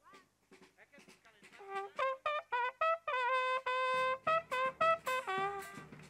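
A band's trumpets strike up a tune about two seconds in, playing short, repeated brass notes over drum hits. The band grows fuller from about four seconds in as the bass drum and other percussion join.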